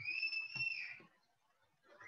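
A single high whistle-like tone lasting about a second, sliding up at the start, holding steady, then fading, with a couple of soft low thumps under it.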